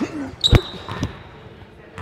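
Basketball bouncing on a hardwood gym floor: one loud bounce about half a second in and a softer one near one second, with a brief high sneaker squeak alongside the first.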